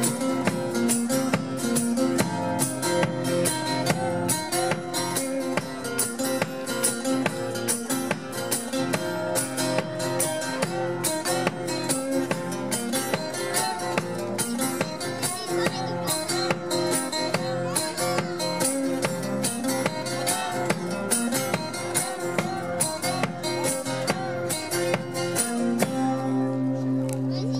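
Two acoustic guitars playing live, strumming a steady rhythm in an instrumental passage of the song.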